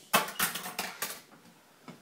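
Sticky tape and clothing being pulled and ripped apart by hand: a quick run of four or five rasping rips and rustles in the first second or so.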